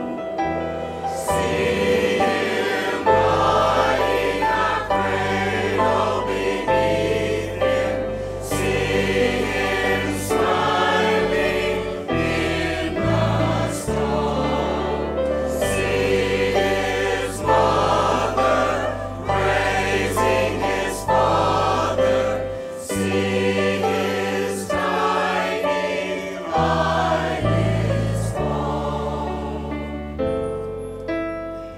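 Mixed choir of men's and women's voices singing a hymn-like piece together, over an accompaniment of held low bass notes that change step by step.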